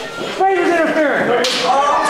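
A sharp smack in the wrestling ring about half a second in, followed by voices.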